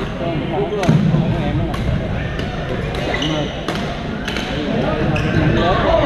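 Badminton rackets striking a shuttlecock during rallies: a run of sharp hits, roughly one every second or less, over voices in a sports hall.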